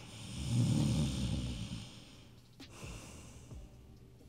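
A man's long, heavy breath out, like a sleepy sigh or snore, lasting about a second and a half.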